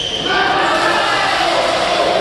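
Players' voices calling out in a large, echoing badminton hall, over the thuds of play on the courts. The calling starts about a quarter second in and carries on.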